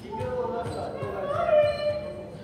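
Volleyball players' shouted calls, echoing in a gymnasium, with a couple of sharp knocks near the start.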